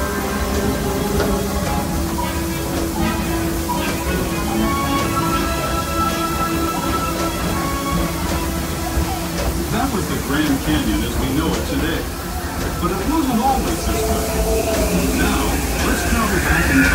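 Ride soundtrack music plays over the low, steady rumble of the Disneyland Railroad train running along its track. About ten seconds in, indistinct voices join.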